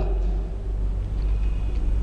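A steady low hum of background room noise picked up by the microphone during a pause in speech.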